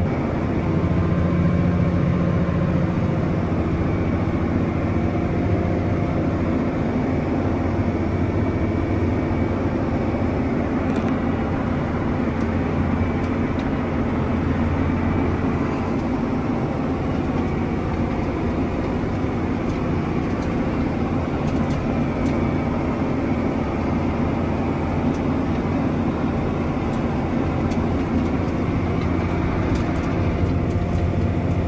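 Large farm tractor's diesel engine running at a steady pitch while driving across a field, heard from inside the closed cab as an even low drone.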